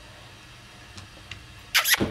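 Quiet room with a few faint taps, then near the end a short, loud hissed "psst, psst" calling a puppy.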